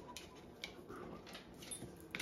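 Faint, scattered soft clicks and ticks from a Great Dane taking a cupcake from a hand, mouth and lips smacking on the food as it eats.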